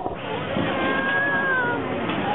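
A single high, drawn-out squeal, like a voice mimicking a meow, that falls slightly in pitch and lasts about a second, over the babble of a crowded hall.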